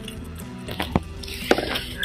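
Soft background music with a few light knocks, then a short watery splash near the end as a hooked fish is hauled out of the water on a hand line.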